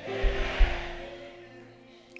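Congregation calling back "amen" in a short burst of many voices, over a held musical chord that fades away. A low bass thud comes about half a second in.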